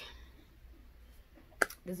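A pause in speech with faint room tone, broken about a second and a half in by a single sharp click just before the voice comes back.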